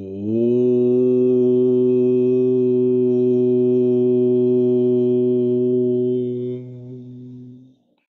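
A man's voice chanting one long, steady Om, held for about seven seconds and fading out near the end.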